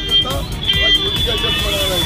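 A man speaking in an interview over a busy background, with music and steady high-pitched tones running underneath.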